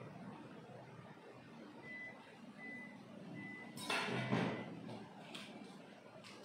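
Three short, high electronic beeps a little over half a second apart, followed about a second later by a brief, loud rustling clatter.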